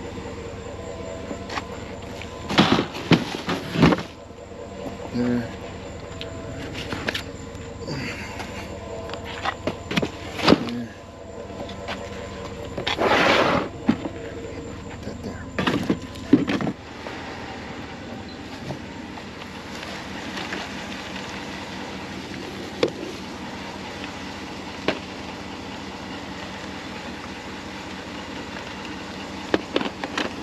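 Curbside junk being handled and loaded: a plastic bin and particleboard panels knocking and clattering in a string of sharp bangs through the first half, over a steady background hum. After that only occasional light clicks of handling.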